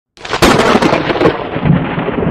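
A thunder-like boom used as an intro sound effect: a sharp crack about half a second in, then a long rumbling tail that slowly fades.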